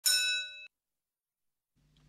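A single bell-like ding that rings for well under a second, fading, then cuts off suddenly.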